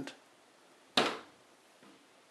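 A hinged MDF cupboard door swung shut, closing with a single sharp knock about a second in as it clicks into place.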